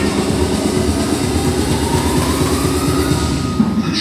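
Concept2 rowing machine's air-resistance flywheel whirring, with a faint whine rising in pitch in the second half as the rowing strokes begin.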